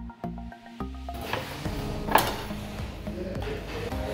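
Background music with steady, evenly spaced notes. From about a second in, a knife cuts a sweet pepper on a wooden cutting board, with a sharp knock about two seconds in.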